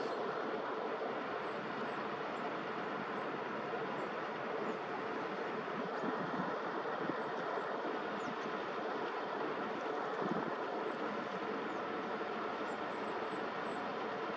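Steady noise of heavy construction machinery, excavators and trucks, running at a distance, with a few faint high chirps now and then.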